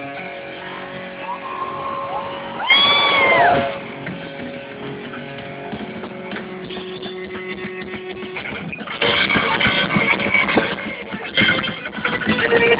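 Live electric guitar in a thrash metal band, heard through a small recording device. It holds sustained notes and ringing tones, with a short rising-and-falling wail about three seconds in. From about nine seconds in the playing gets louder and denser.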